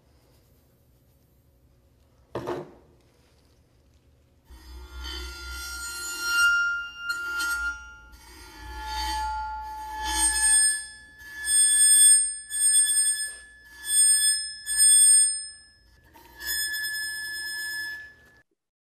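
A violin bow drawn across the edge of a sand-covered metal Chladni plate, making it ring with sustained high tones in about nine separate bow strokes. The pitch shifts from stroke to stroke, higher in the later ones, as different resonances of the plate are set off.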